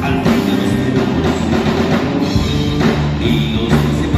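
Rock band playing live: a driving drum-kit beat with electric guitars and bass guitar, loud through the stage sound system.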